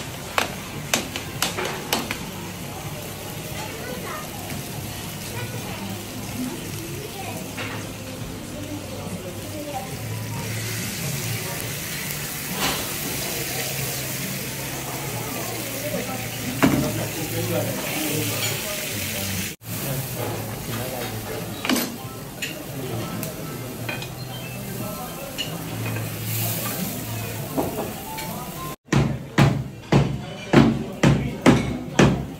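Food sizzling in a hot pan over open flames, with a metal fork clinking and scraping against the pan and dishes, over a murmur of voices. A few sharp knocks come at the very end.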